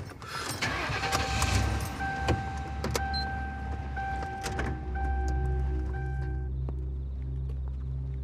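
Police patrol car driving off, its engine and road noise loud for the first five seconds and then falling away. Film score music over it: a repeated steady tone pulsing about once a second, then a low sustained drone from about five seconds in.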